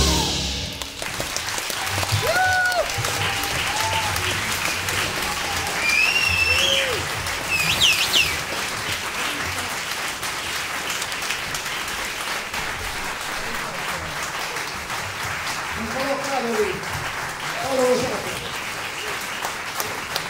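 Audience applauding and cheering as the jazz big band's final chord cuts off at the start, with a few shrill whistles about six to eight seconds in and shouts rising over the clapping near the end.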